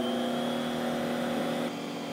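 Vacmaster household wet/dry shop vac running steadily just after being switched on, its motor hum and rushing air drawn through the open port past an airflow meter. The hiss drops slightly near the end.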